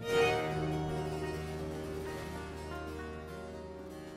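Baroque continuo chord: a harpsichord chord struck at the start, over sustained low strings, held and slowly fading. It is the cadence that closes a sung recitative.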